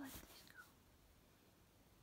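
Near silence: quiet room tone, with only the fading end of a softly spoken word at the very start.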